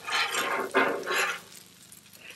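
Metal spatulas scraping and turning fried rice on a Blackstone steel griddle top, three scratchy scraping strokes in the first second and a half, then quieter.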